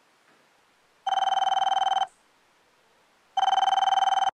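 Telephone ringing: two trilling rings about a second long each, the first about a second in and the second just over three seconds in, each stopping sharply.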